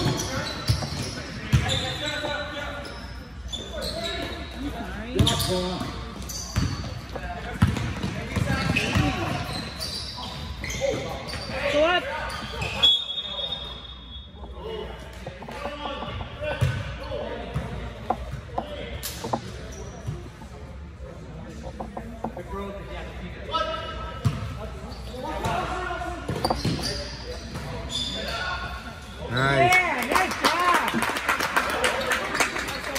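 Basketball bouncing on an indoor gym floor during play, with the echo of a large hall, and voices calling out over it.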